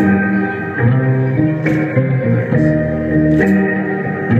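Live band music with plucked guitar over sustained chords that change every half second or so, and a sharp percussive hit recurring about every second and three-quarters.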